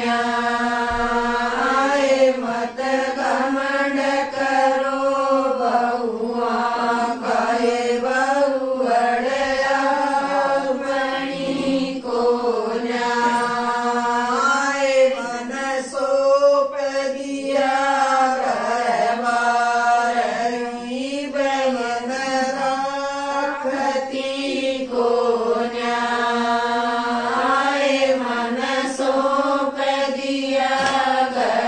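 Women singing a traditional folk song (geet) together in a steady, repetitive, chant-like melody.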